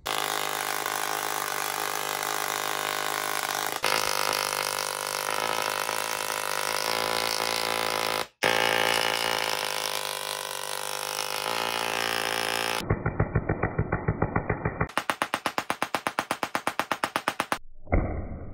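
Handheld Tesla coils arcing: a steady, loud electrical buzz full of even tones, broken by a brief cut about eight seconds in. From about thirteen seconds the sparks come as a rapid pulsing crackle, about six pulses a second, which stops just before the end.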